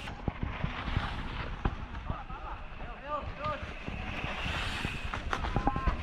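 Mountain bike rolling down a dirt forest singletrack: a steady low rumble of tyres on the trail with frequent sharp knocks and rattles from the bike over bumps, and wind buffeting the microphone.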